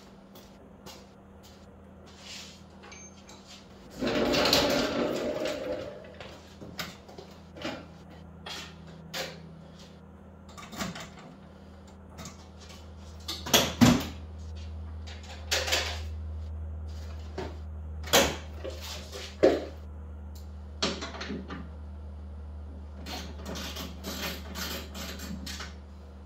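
Scattered clicks and knocks of hands working at a Kawasaki Voyager's hard saddlebag, with a rustle about four seconds in. A low steady hum comes in about eleven seconds in.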